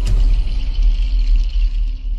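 Sound effect of a TV channel logo sting: a sharp hit, then a loud, deep rumble with a high shimmer over it that fades near the end.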